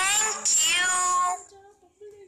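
A high, pitch-shifted cartoon character voice saying "thank you" in two quick syllables, the first gliding in pitch and the second held.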